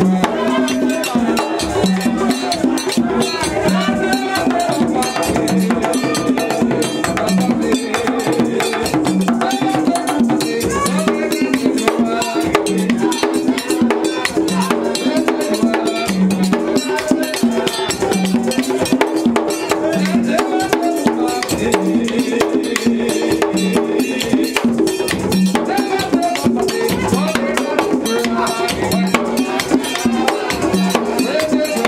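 Vodou ceremony drumming on peg-tuned, skin-headed hand drums in a steady driving rhythm, with group singing over it.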